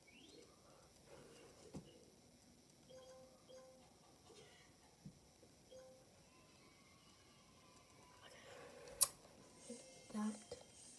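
Quiet room with faint short tones in the background and a few small handling clicks, then one sharp click about nine seconds in.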